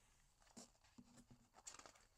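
Near silence with a few faint rustles of paper as a picture book's page is turned.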